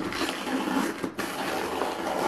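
Brown paper mailer envelope being torn open and handled: a continuous crackly paper rustle with a short break about a second in.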